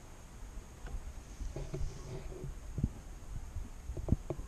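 Low rumble with soft, dull thumps and knocks from handling aboard a kayak, the loudest a little under three seconds in.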